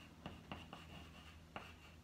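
Chalk writing on a blackboard: a handful of faint, short scratching strokes and taps as letters are chalked, some strokes with a thin, high squeak.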